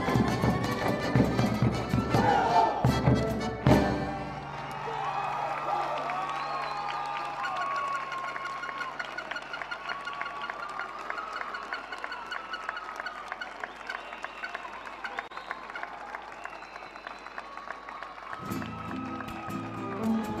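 Live Argentine folk music for a malambo, with violin and accordion. For the first four seconds heavy drumming and boot stamping drive it, ending in a sharp hit. Then comes a softer stretch of violin melody over fast, light footwork taps, and the loud drumming and stamping return near the end.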